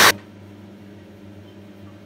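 Countertop jug blender running, blending a thin liquid mixture, that stops abruptly just after the start. A faint steady low hum follows.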